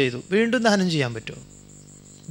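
A man speaking Malayalam into a microphone in a discourse, stopping about a second and a half in. A faint steady high-pitched whine runs underneath.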